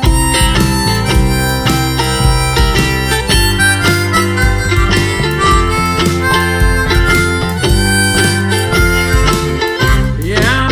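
Harmonica solo over strummed acoustic strings and a band backing with bass and a steady beat, in a blues-tinged country instrumental break.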